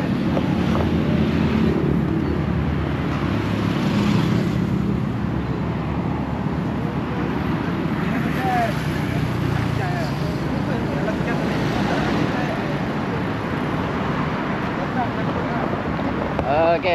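Steady road traffic going past on a multi-lane road, a vehicle's engine hum strongest in the first few seconds, with wind buffeting the microphone and faint voices in the background.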